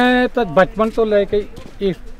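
Speech: a man talking as the group walks, opening with a long drawn-out vowel.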